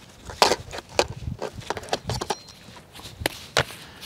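Irregular knocks and clatters of tools being handled, with some rustling, as a hatchet is pulled out of a gear bag.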